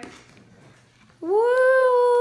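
A baby's voice: one long high-pitched squeal, rising briefly and then held level for about a second, starting a little over a second in.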